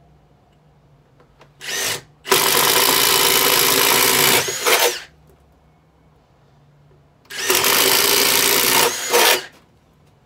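Handheld cordless drill boring a starter hole into the sculpted glove piece: a short burst, then a run of about two seconds, a second run of about a second and a half, each ending with a brief extra burst.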